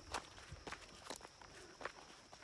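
Faint footsteps walking on a dirt forest track, a soft step about every half second.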